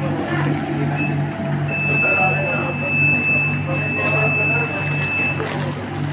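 A steady, high electronic beep, with a short blip about a second in and then one long tone held for nearly four seconds, over the regularly pulsing hum of commercial kitchen machinery.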